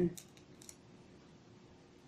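A few faint, short crackling clicks as a dried egg-white face mask is peeled away from the skin of the cheek.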